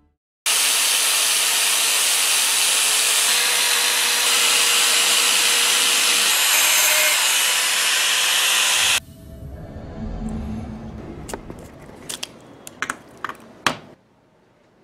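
A loud, steady hissing noise that starts abruptly about half a second in and cuts off suddenly about nine seconds in. A quieter stretch follows, with a low hum and several sharp clicks and taps as a small iron-core transformer and its wire lead are handled.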